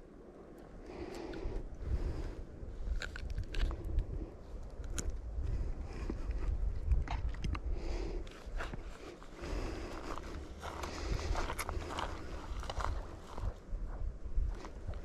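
Close handling noise from an angler unhooking and holding a small largemouth bass and moving the rod: scattered clicks, scrapes and rustles, steady in number, over an uneven low rumble.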